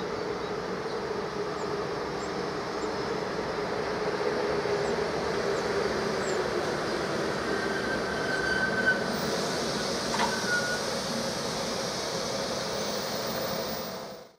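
Electric locomotive hauling passenger coaches slowly running in, a steady rumble with a low hum that sinks gradually in pitch as it slows. Brief high brake or wheel squeals come about eight and ten seconds in, with a sharp click between them.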